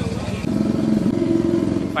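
A vehicle engine running close by, growing louder about half a second in, its pitch dipping briefly and rising again around the middle.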